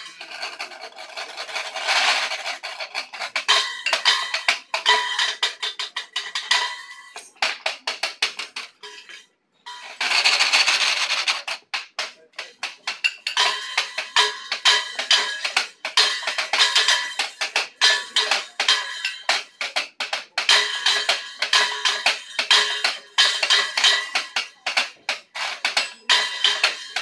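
Washboard played as percussion: fast rhythmic metallic clicking and scraping. There is a short break about nine seconds in, after which the playing resumes with a dense scraping passage and then steady rapid clicking.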